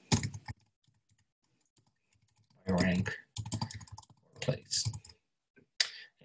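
Soft, quick keystrokes on a computer keyboard as a line of text is typed. A man's voice talks over it, loudest from about three seconds in to five.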